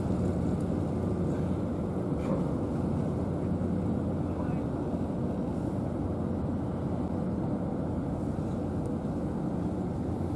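Steady low outdoor rumble with a faint hum running through it, unchanging throughout.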